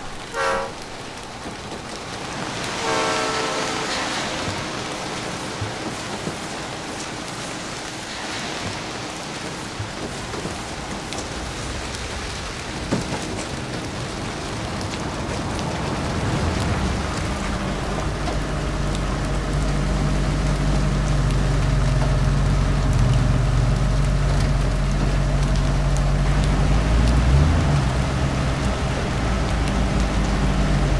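Steady rain falling, with a freight train's horn sounding briefly at the start and again about three seconds in. From about sixteen seconds in, a low steady drone joins the rain and grows louder.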